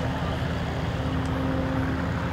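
Propeller aircraft's piston engine idling on the ground, a steady hum with a held low tone.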